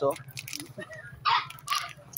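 A dog barks twice briefly, with short, sharp barks about a second apart in the second half.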